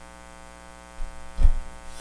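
Steady electrical mains hum carried through the podium microphone's sound system, with a brief low thump about one and a half seconds in.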